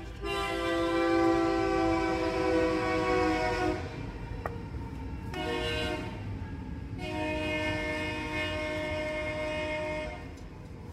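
Locomotive horn sounding a chord of several tones in one long blast, a short blast about five seconds in, and another long blast from about seven seconds, over a low rumble. With the long blast just before, this is the long-long-short-long grade-crossing signal.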